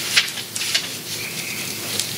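Sheets of paper being handled and shuffled close to a microphone: an irregular crackling rustle with a sharper crinkle just after the start.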